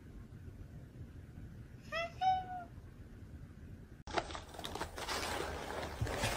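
Orange-and-white cat giving a two-part "hahenggg" call instead of a meow about two seconds in: a short bending note, then a longer steady one. From about four seconds in, a steady hiss with a few clicks takes over.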